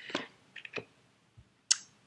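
Tarot cards being handled on a table: a few soft clicks, then a sharper card snap about three quarters of the way through.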